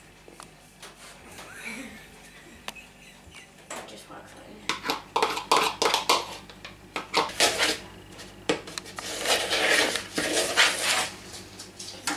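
A spoon scraping and clattering against bowls as a melted mixture is scraped out of a small plastic microwave bowl into a large mixing bowl, then stirred. The first few seconds are quiet apart from a few light clicks; the scraping and knocking start about four seconds in and grow busier.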